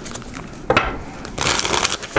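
Tarot deck being shuffled by hand: cards rustling and sliding against each other, a short burst about two-thirds of a second in and a longer stretch near the end.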